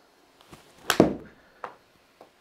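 A golf iron strikes a ball hit into a simulator impact screen: one sharp crack about a second in that rings briefly, followed by a lighter tap.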